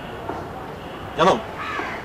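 A crow cawing once, a short harsh call falling in pitch about a second in, with a fainter sound just after it.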